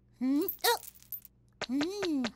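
A cartoon chick character's wordless vocal sounds: two short calls, a few light clicks, then a longer call that rises and falls in pitch near the end.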